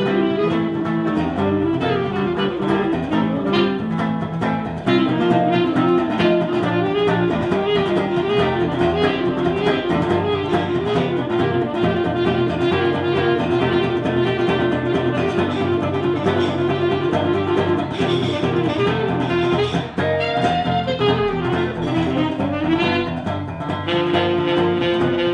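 Saxophone playing a fast jazz melody line over acoustic guitar accompaniment, an instrumental duo performance.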